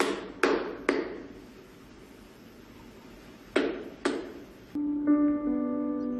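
Chalkboard erasers clapped together to clean them: five sharp knocks, three in quick succession and then two more a few seconds later. Gentle piano music starts near the end.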